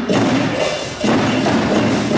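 Live West African traditional percussion: hand drums struck in a steady rhythm, with sharp wooden-sounding strokes.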